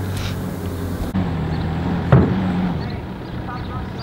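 Diesel engine idling steadily, with one sharp knock about two seconds in.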